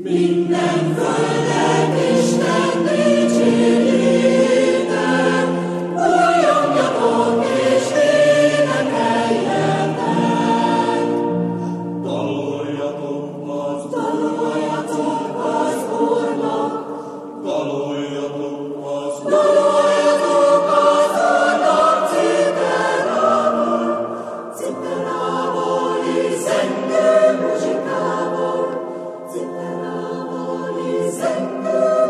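Mixed choir of men and women singing sacred choral music in a large basilica, coming in together at once out of silence and carrying on in long sustained phrases that swell and ease.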